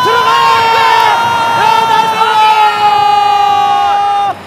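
A TV football commentator's goal call: one long held shout that slowly falls in pitch, greeting a goal as it is scored.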